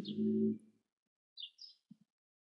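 A man's voice trailing off in a low, held hum for about half a second, then near silence with a couple of faint, brief high-pitched chirps.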